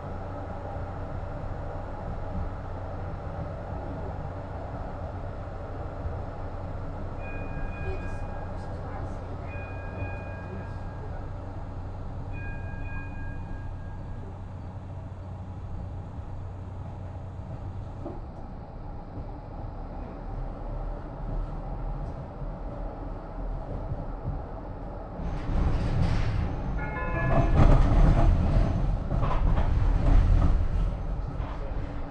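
Blackpool Flexity 2 tram running, heard from inside: steady running noise with an electric motor hum that drops away about 18 seconds in. A two-tone electronic chime sounds three times between about 7 and 14 seconds in, and near the end the rumble grows louder with a brief squeal.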